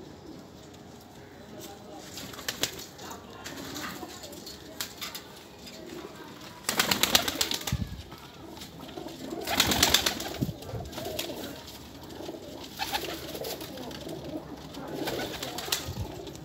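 Pakistani high-flyer pigeons cooing in their loft, with two louder fluttering bursts about seven and ten seconds in.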